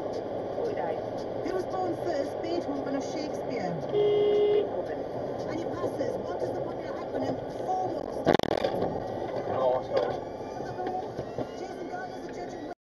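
Steady road and tyre noise heard from inside a car driving on a snowy motorway. A car horn sounds one short blast about four seconds in. A sharp knock comes a little past eight seconds.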